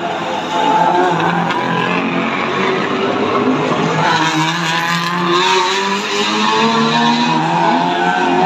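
Historic racing cars, Ford Escort Mk2s among them, running hard through a tight corner one after another. The engine pitch falls as they slow for the bend and rises again about halfway through as they accelerate out.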